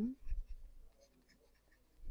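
Faint taps and light scratches of a stylus writing on a tablet screen, mostly in the first second.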